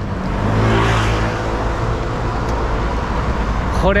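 Street traffic: a motor vehicle passes close by, loudest about a second in, over a steady low rumble of city traffic.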